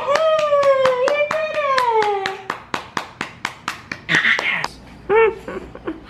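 Hands clapping steadily, about five claps a second for roughly four seconds, with a long high-pitched voice held over the first couple of seconds and slowly falling in pitch. A couple of short vocal sounds follow near the end.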